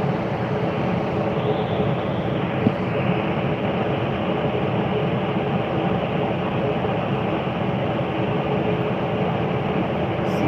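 Steady mechanical hum and rush heard inside an enclosed Ferris wheel gondola as it slowly moves off from the boarding platform, with a single light knock about three seconds in.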